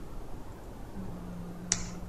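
A single sharp click about three-quarters of the way through, over a faint low steady hum that starts halfway in.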